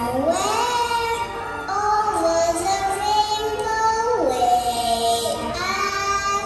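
A young girl singing a slow melody with backing music, her voice sliding up to a held note about half a second in and then holding long notes.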